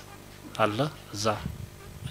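A man speaking a few short phrases into news microphones, with pauses between them, over a steady low buzz.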